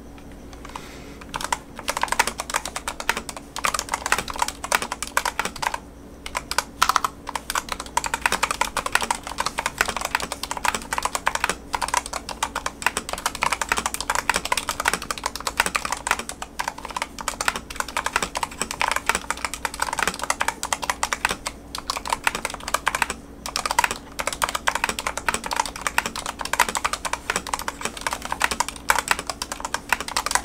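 Typing on a Dustsilver D66 65% mechanical keyboard with Gateron Brown tactile switches: a fast, continuous run of keystroke clacks starting about a second in, with short pauses near six and twenty-three seconds. A faint steady hum runs underneath.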